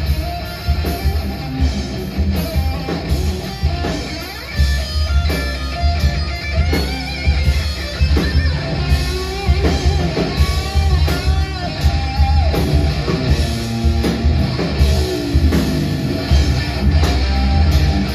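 Live rock band playing an instrumental passage: electric guitar over drums and a heavy bass. The guitar line has pitches that bend up and down.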